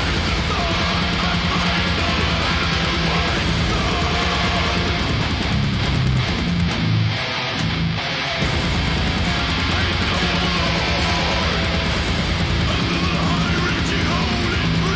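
Heavily distorted ESP LTD electric guitar playing metal riffs along with a full-band backing track. The low end drops out briefly about seven or eight seconds in, then the band comes back in.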